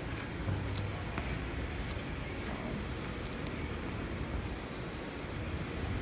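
Steady background noise of a large indoor exhibition hall, with faint footsteps on a concrete floor.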